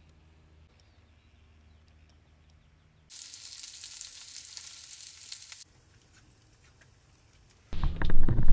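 After a faint low hum, sausages and a bagel sizzle in a cast-iron skillet for about two and a half seconds, then stop. Near the end a much louder sound cuts in.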